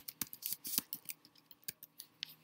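Computer keyboard keys clicking in a quick, irregular run as a word is typed.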